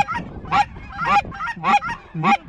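Canada goose honks: a steady run of short, loud honks, about two a second, each breaking quickly from a low note to a higher one.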